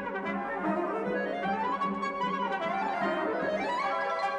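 Orchestral music with brass to the fore, its melody climbing, falling back and climbing again.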